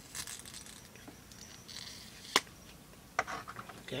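Light handling of a plastic lipstick tube: faint rustling, one sharp click a little past halfway, then a few quieter clicks.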